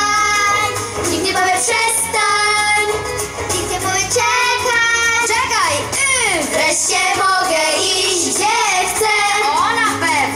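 Children's voices singing together into microphones over instrumental accompaniment, with big sweeping pitch glides in the voices in the middle and again near the end.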